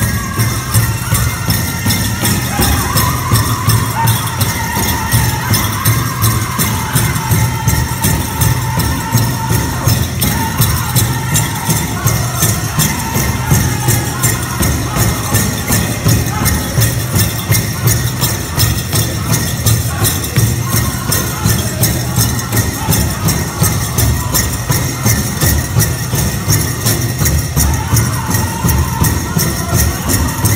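Powwow drum group singing a contest song: a large drum struck in a steady, even beat, with a group of men's high voices singing over it in stretches. Dancers' bells jingle along with the beat.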